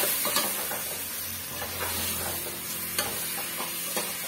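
Potato pieces and masala sizzling as they fry in an open aluminium pressure cooker, while a metal spoon stirs and scrapes against the pot, with a few light scrapes and clinks.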